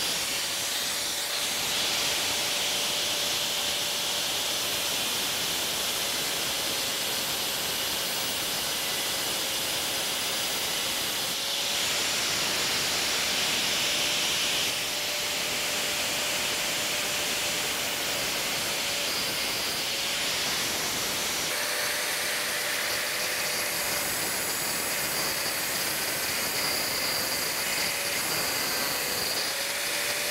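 Angle grinder with a thin cutoff wheel cutting a groove into cast iron: a steady motor whine with a hiss of abrasive cutting, the pitch sagging briefly a few times as the wheel bites. The crack in the cast iron vise body is being opened into a slot so that bronze braze can flow down into it.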